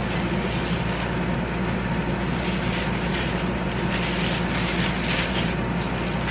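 Steady background hum and hiss, with faint crinkling of plastic wrap being pulled off a camera kit lens about four to five seconds in.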